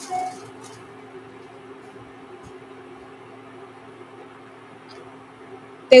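Steady low electrical hum from a portable induction burner heating a nonstick pan, with one short beep from it just after the start.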